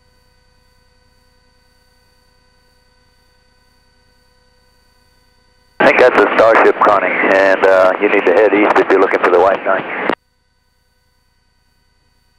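A faint steady electrical hum with a thin high whine. About six seconds in, a loud burst of voice comes over the radio, muffled and narrow like a radio channel, and cuts off abruptly about four seconds later.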